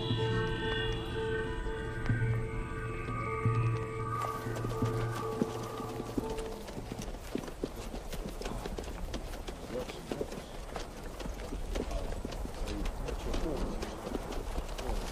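A sustained orchestral drone fades out over the first few seconds. About four seconds in, the clip-clop of several horses' hooves takes over, a dense, uneven run of hoofbeats that carries on to the end.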